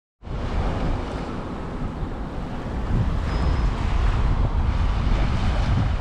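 Small waves washing onto a sandy beach, with wind blowing on the microphone and making a steady low rumble.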